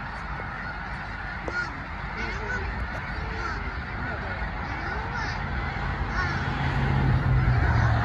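A huge flock of snow geese calling all at once, a dense, continuous chorus of honking. A low hum grows louder over the last couple of seconds.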